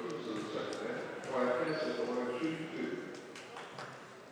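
People's voices carrying through a basketball gym, with a few short sharp knocks near the end, typical of a basketball being bounced on the hardwood before a free throw.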